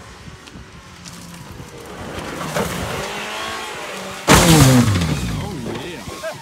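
Ford Fusion's engine revving hard and rising in pitch as the car drives down the muddy hill to the jump. About four seconds in comes the loudest sound, a heavy impact as the car lands the jump, and the engine note drops away after it.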